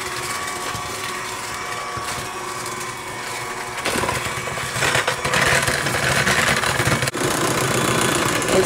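Electric hand mixer running steadily, its beaters churning through thick cake batter. It gets louder and harsher about four seconds in, with a brief break near the end.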